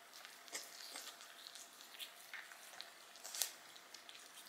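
Faint, irregular scratching and clicking of a toothbrush scrubbing a small dog's teeth.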